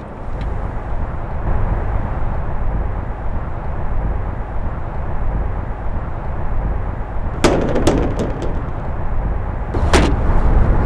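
A sedan's trunk lid slammed shut about seven and a half seconds in, a single sharp bang followed by a few small clicks, over a steady low outdoor rumble. Another sharp click comes near the end.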